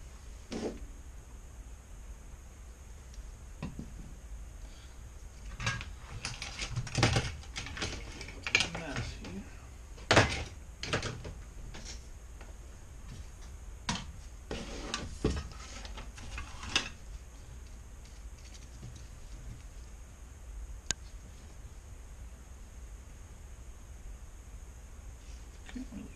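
Small tools and objects handled on a workbench: a run of clicks and knocks in the middle, the sharpest about ten seconds in, over a steady hum and faint high hiss.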